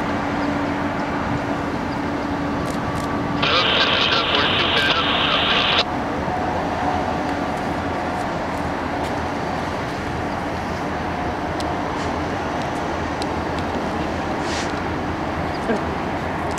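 Union Pacific diesel locomotives running in a rail yard, a steady engine rumble with a low hum at the start. About three and a half seconds in, a loud high-pitched sound rides over it for about two seconds, then stops suddenly.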